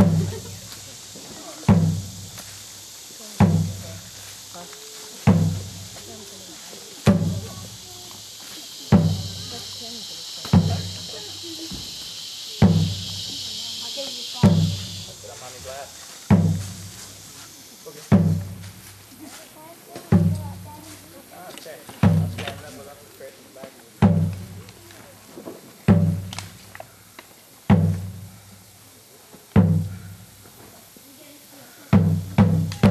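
A large drum beaten slowly and steadily, one deep stroke about every two seconds, each ringing out briefly. A steady high hiss lies under the first half and fades out about halfway through.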